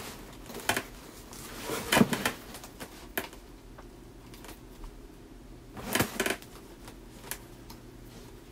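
Light clicks and knocks from a small steel bar-and-bracket part being handled and turned over in the hands. The loudest comes about two seconds in, and a quick cluster follows about six seconds in, over a faint steady low hum.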